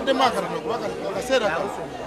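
Speech: voices talking throughout, with overlapping background chatter.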